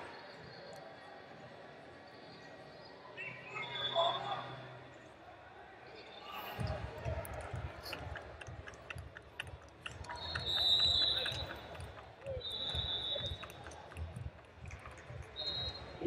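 Large-hall background at a wrestling match: scattered voices, and from about six seconds in a run of dull, irregular thumps. A few short, high, steady tones rise above them, the loudest moment coming around ten to eleven seconds in.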